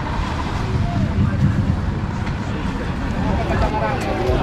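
Wind buffeting the microphone in a steady, uneven rumble, with faint voices of people nearby.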